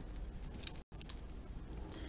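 A pen scratching on paper as an equation is written out by hand. There is a brighter, louder stroke a little over half a second in, and the sound cuts out for a moment just before the middle.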